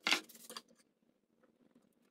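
Wooden shelf boards handled on a workbench: one sharp knock with a brief ring just after the start, then a few faint taps and scrapes.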